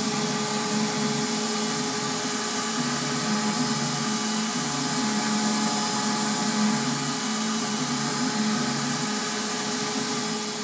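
CNC router spindle running with a steady whine as its end mill cuts a foam blank at a slow 100-inches-per-minute feed. Under the whine, a lower hum swells and drops about once a second.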